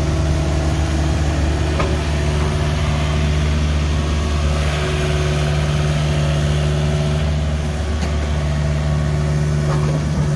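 Takeuchi TB240 compact excavator's diesel engine running steadily, an even low drone with no change in speed.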